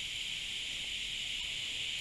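Steady, high-pitched chorus of insects, a continuous even buzz with no break.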